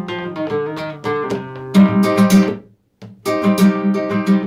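Nylon-string flamenco guitar with a capo playing a bulería passage in E, por arriba. First comes a run of single plucked notes, then sharply strummed chords, a brief break just before the three-second mark, and more strummed chords: a different way of filling the compás.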